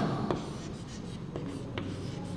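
Chalk writing on a blackboard: a few light taps and scratches of the chalk as characters are formed.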